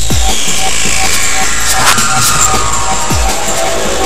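Electronic music with a deep sweep that drops sharply in pitch at the start and again about three seconds in. Over the first two seconds a higher tone glides slowly downward above a steady, regular ticking pulse.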